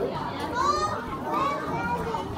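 Children's voices: a couple of high-pitched, gliding calls over a background of chattering people.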